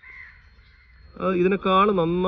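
A crow caws faintly in the background at the start. A man's voice begins speaking a little over a second in.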